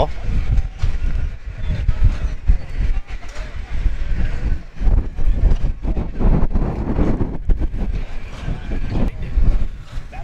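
Wind buffeting the camera microphone: a loud, gusting low rumble that rises and falls irregularly.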